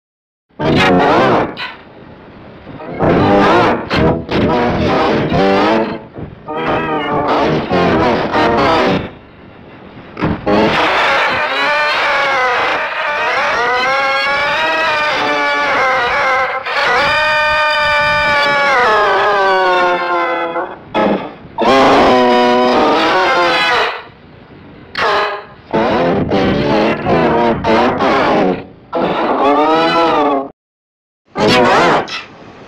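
Voice audio put through a 'G Major' effects chain: layered with several pitch-shifted copies of itself into a chord and distorted, so it sounds like wavering electronic music. It comes in short bursts, then a long held, bending wail in the middle, then short bursts again.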